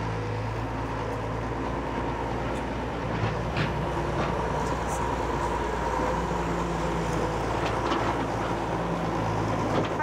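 Tracked excavator's diesel engine running at a steady speed, with a few faint knocks over it.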